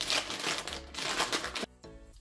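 A cat eating a treat from a hand: a rapid run of small clicks from licking and chewing, stopping shortly before the end, with background music.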